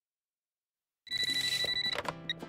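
Silence, then about a second in a cartoon telephone starts ringing with a steady high ring, over light background music.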